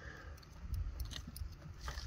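Faint wet cutting with small scattered clicks as a knife blade slices down through the neck tissue of a deer's head, over a low steady rumble.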